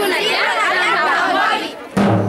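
A crowd of children's voices shouting and chattering together, many voices overlapping. A drum is struck once at the very end.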